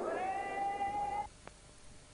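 A single raised voice in a long, rising, drawn-out call. It cuts off suddenly a little over a second in, leaving only faint hiss.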